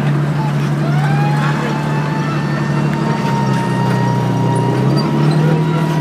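Engines of vintage military vehicles, a WWII-style jeep and army trucks, running as they drive slowly past on grass. A thin, steady, whine-like tone rises in about a second in and holds.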